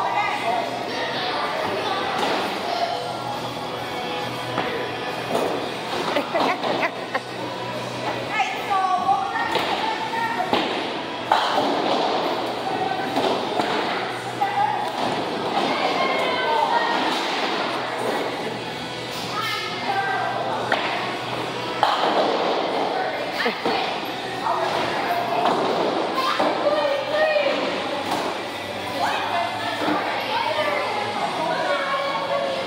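Busy bowling alley din: background chatter and music, with repeated thuds and clatters of bowling balls and pins.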